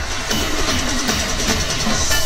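Instrumental backing music with a steady beat, played through a PA loudspeaker during a break between sung verses.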